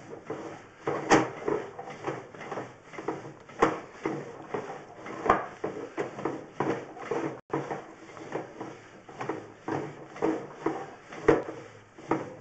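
Sewer inspection camera push cable being fed down a cast iron drain line, with irregular knocks, clicks and scraping as the cable and camera head are pushed along. A few louder knocks stand out among many small ones.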